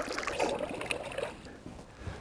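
Lake water splashing at a boat's side as a released walleye kicks away from the angler's hand, the splashing fading to trickles and drips.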